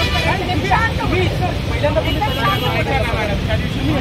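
Several voices talking over one another in a verbal argument in Marathi, over a steady low rumble of road traffic.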